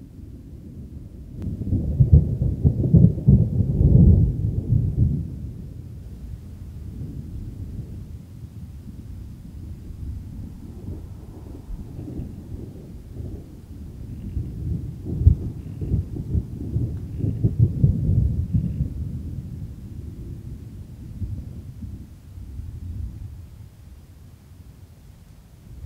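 Rolling thunder: long low rumbles that swell loudest twice, about two seconds in and again in the second half, with quieter rumbling between.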